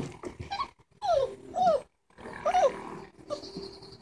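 A Dalmatian puppy gives three short whining calls about a second in, each bending up and then down in pitch.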